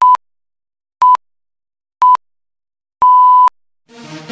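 Broadcast countdown beeps: a short, steady high-pitched pip once a second, three times, then a longer beep of about half a second.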